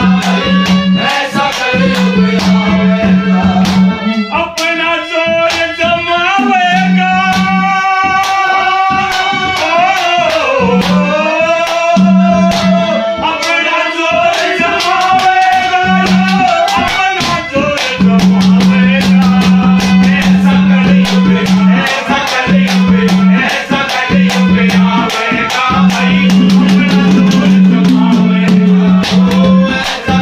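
Haryanvi ragni folk song: a male voice sings long, wavering held notes over folk instrumental accompaniment with a steady, fast percussion beat. The sung line stands out most in the first half.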